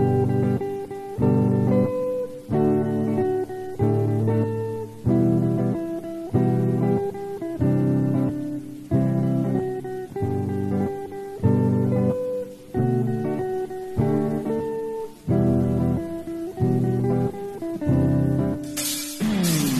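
Electric guitar playing the song's melody as a run of struck chords, about one and a half a second, each ringing until the next one is struck.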